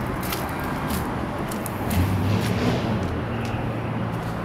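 Low, steady engine hum from a vehicle, growing a little louder about two seconds in, over outdoor noise with scattered light clicks.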